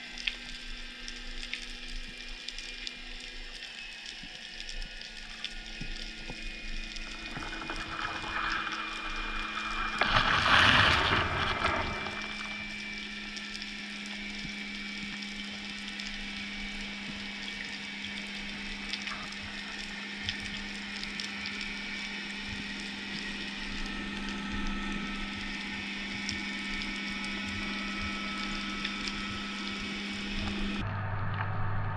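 Underwater ambience recorded through a diver's camera: a continual crackling over a steady low hum, with a louder rushing whoosh of water swelling and fading about ten seconds in.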